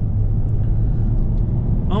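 Jaguar XF 3.0-litre V6 diesel driving at speed, heard inside the cabin: a steady low drone of engine and road noise with no change in pitch.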